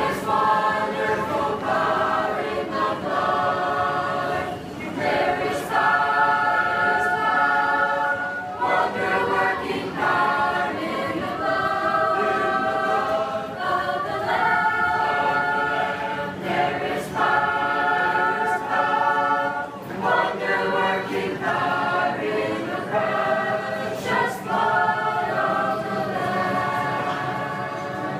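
Mixed choir of men and women singing a Christian hymn a cappella, in phrases of long held notes with brief breaks between them.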